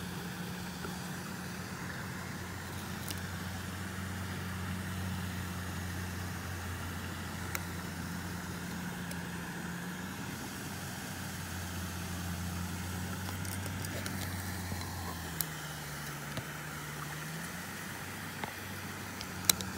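A motor running steadily, a low even drone whose pitch drops about fifteen seconds in, with a few faint clicks.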